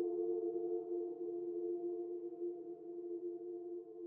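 A sustained ambient drone chord, a few steady held tones in the middle register, slowly fading.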